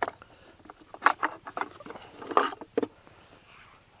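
Irregular clicks, knocks and scraping as small parts are handled and moved about inside the carrying case of a Soviet DP-12 Geiger counter kit, with about six sharp knocks spread unevenly.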